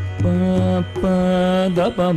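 Carnatic music in raga Ananda Bhairavi: voice and violin holding long notes that break into quick ornamental slides near the end, over a steady tanpura drone.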